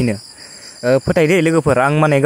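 Speech: a man narrating, with a pause of about half a second near the start, over a faint steady high-pitched background tone.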